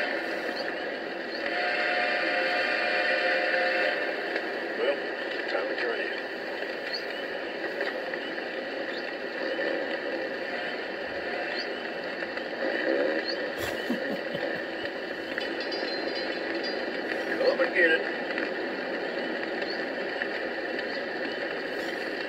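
Lionel maintenance-of-way kitchen sound car playing its idle sequence through its small onboard speaker: a recorded work-crew scene with men's voices talking over a steady background of work-site noise.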